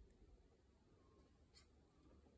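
Near silence: a faint low background rumble, with a single faint click about one and a half seconds in.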